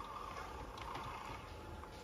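Quiet room tone: faint, steady background noise.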